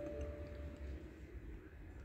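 Quiet room tone with a steady low hum, and a faint steady high tone that fades out within the first second.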